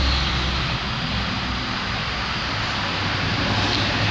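Steady rushing background noise with a low rumble underneath, holding at an even level throughout.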